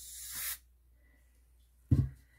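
Canned air hissing out through its thin extension straw in a short burst, blowing wet alcohol ink into petal shapes; it grows a little louder and cuts off about half a second in. A single sharp knock comes just before the end.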